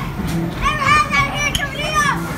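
A child's high-pitched excited squeals, twice, over the din of an arcade with game music.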